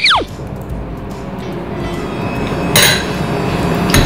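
A quick descending whistle sound effect at the start, then soft background music. A short bright clink comes a little before the three-second mark.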